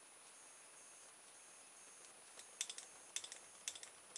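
Open-air reed switch of a home-made pulse motor clicking and sparking as its contacts switch the coil, which has no flyback diode. After a near-silent first half, an irregular run of sharp clicks starts about halfway in.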